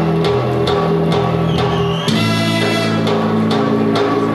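Live plena band playing, with a drum kit and percussion beating a steady pulse under sustained chords from guitar and bass; the harmony shifts to a new chord about halfway through.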